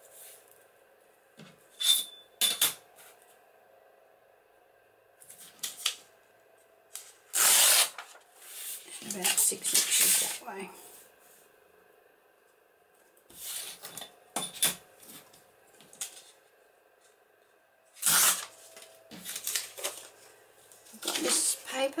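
Paper being hand-torn along a steel deckle-edge ruler in several short rips. There are sharp clinks of the metal ruler being set down and picked up, and paper rustling as sheets are handled.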